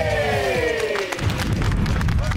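A contestant splashing down into a tank of thick green gunge, heard as a low rumble. Over it a long tone slides down in pitch and fades out a little after a second in.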